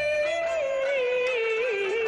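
Women singing Peking opera in unison over instrumental accompaniment: one long, slowly wavering held note that sinks lower toward the end.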